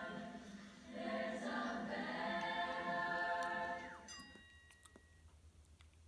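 Several voices singing long held notes together, like a small choir, breaking off about four seconds in with a falling slide. A short steady tone and a few faint clicks follow.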